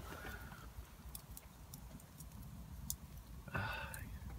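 Faint crackling of a wood campfire: scattered sharp pops over a low rumble, with a brief hiss about three and a half seconds in.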